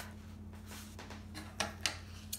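Soft rustling of stretch fabric being smoothed and handled by hand, with a few brief handling noises in the second half, over a steady low hum.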